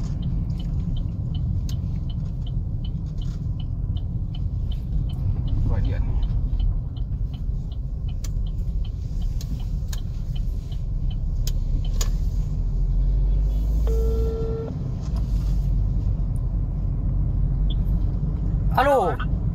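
Car interior road and engine noise while driving, a steady low rumble. A fast, even ticking runs through the first ten seconds or so, and a short beep sounds about fourteen seconds in.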